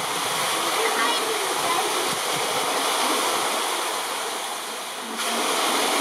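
Steady rush of running water, louder from about five seconds in, with faint voices of onlookers underneath.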